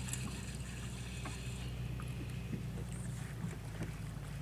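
A bass boat's motor giving a steady low hum, with a few faint short ticks over it.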